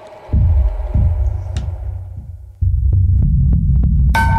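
Low, throbbing horror-style sound effect: a dark droning rumble with a few short hits, becoming louder and steadier about two and a half seconds in.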